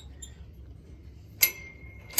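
A single sharp metal clink from the chain-link gate's lock about one and a half seconds in, ringing on briefly with a clear tone.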